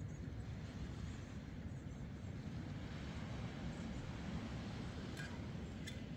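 Hot water poured from a small camp-stove pot into a mug, over a steady outdoor rush. Two small clicks come near the end as the pour runs out.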